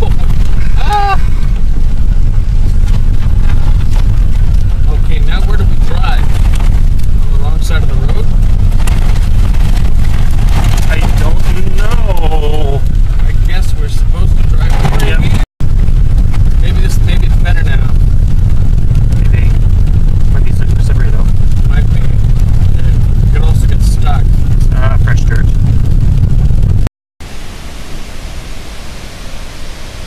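Loud low rumble of a car driving on a wet gravel road, heard from inside the cabin, with voices talking over it. About 27 seconds in it cuts to a much quieter, steady outdoor noise.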